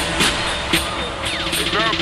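Slowed-down, chopped-and-screwed hip hop track: a dense beat with sharp drum hits, and a drawn-out, pitched-down voice sliding in near the end.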